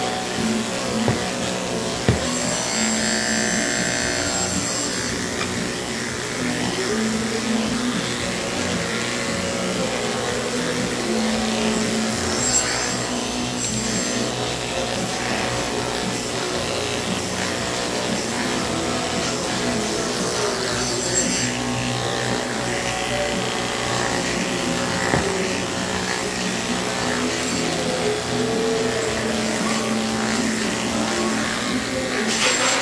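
Cordless pet clippers buzzing steadily as they trim fur, over background music.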